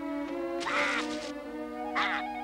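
Cartoon stork's squawk, one call of about half a second near the middle, over background music with held notes.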